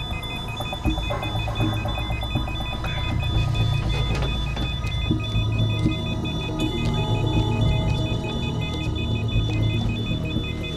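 Hospital patient monitor alarm beeping in a fast, evenly repeating pattern over a low steady hum. It sounds for a patient whose heart is being compressed by blood collecting around it (pericardial effusion).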